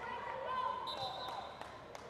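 A basketball being dribbled on a hard outdoor court: a few sharp bounces in the second half, over voices from the players and onlookers.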